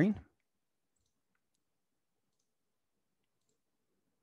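The last syllable of a man's word at the very start, then near silence with a few faint, scattered computer-mouse clicks as a slideshow is switched to full screen.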